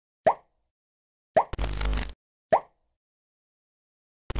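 Three short, bubbly pop sound effects about a second apart, each a quick falling tone. Right after the second pop comes a half-second burst of noise with a heavy low end. These are the stock effects of an animated logo and subscribe-button outro.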